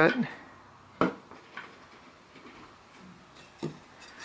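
Wooden frame pieces handled on a cork-topped workbench: a sharp knock about a second in and a softer one near the end, with quiet handling between.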